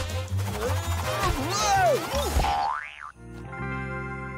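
Cartoon soundtrack: springy boing sound effects with bending pitch glides over a bass-heavy music track. About two and a half seconds in, a steep rising glide leads into a held chord that slowly fades.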